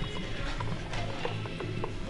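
A run of small plastic clicks and rattles from a pre-workout container being handled, over background music.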